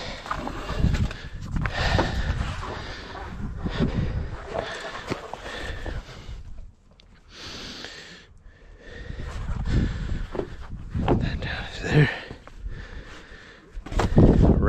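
Heavy breathing from exertion, with the rustle and scrape of a nylon cargo strap being thrown and pulled over tarp bundles on a flatbed trailer deck.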